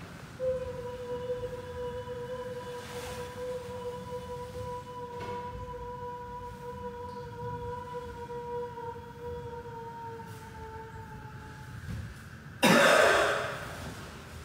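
A steady, hum-like tone held for about eleven seconds, sagging slightly in pitch as it fades. It is followed near the end by a sudden loud, harsh burst like a cough.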